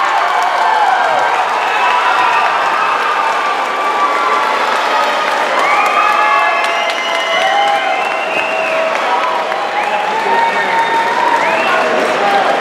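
Crowd cheering and applauding at the end of a cage fight, with many voices shouting and whooping over steady clapping.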